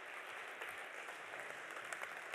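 Faint, steady hiss of room and audience noise in a large hall.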